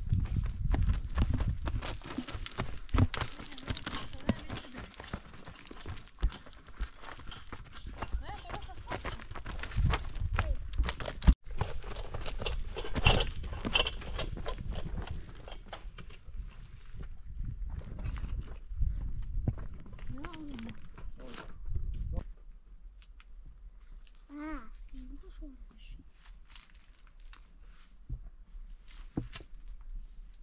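Footsteps crunching and scraping on loose stones and gravel as people walk down a rocky slope, irregular and close. The steps die down about two thirds of the way through, leaving a few short calls.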